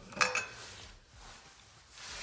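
A short light clink, then quiet room tone.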